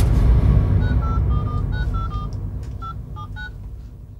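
Edited-in soundtrack effect: a sudden deep boom that fades away slowly, with a quick run of short electronic beeping notes at different pitches starting about a second in.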